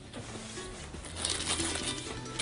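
Quiet background music, with rustling and crinkling as a small toiletry bag is handled and pushed into a suitcase's mesh pocket, loudest in the second half.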